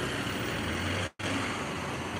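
Steady city street ambience with traffic noise. The sound cuts out completely for an instant about a second in.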